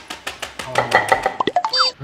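Edited-in comedy music and sound effects: a fast run of clicks, then quick rising and falling pitch glides and a short pitched tone near the end.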